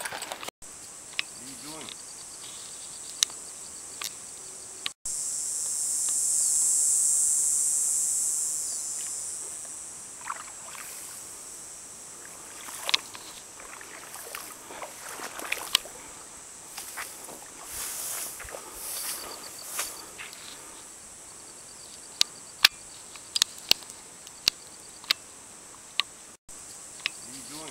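A high-pitched insect buzz swells up and fades away over about five seconds, over a faint steady high insect whine, with scattered small clicks and knocks.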